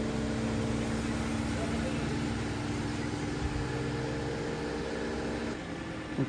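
Audi A5 engine idling as the car creeps slowly forward, a steady hum with a few held tones that stops shortly before the end.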